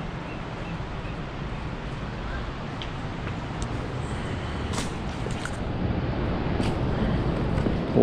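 Steady rumble of ocean surf and wind, growing slowly louder toward the end, with a few sharp clicks of footsteps on loose stones in the middle.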